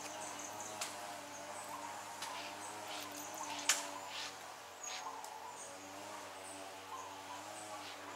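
Quiet outdoor ambience: faint bird chirps over a steady low hum, with a few light clicks.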